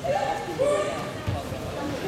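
Shouting voices in a large hall, loudest in the first second. Dull thuds of karate fighters' feet on foam mats, one of them about a second and a quarter in.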